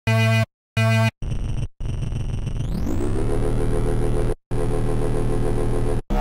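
Xfer Serum software synthesizer playing a heavy rolling drum-and-bass bass patch. Two short stabs are followed by longer held notes, one gliding up in pitch about two and a half seconds in. The pitch bend comes from an envelope routed to the master tuning.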